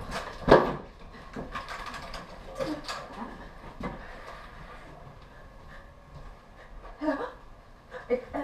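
A run of knocks and clatters, the loudest a sharp knock about half a second in, over a faint steady hum.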